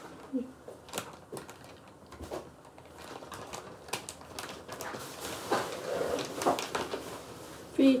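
Plastic food packaging and small items being handled: scattered light clicks and crinkles.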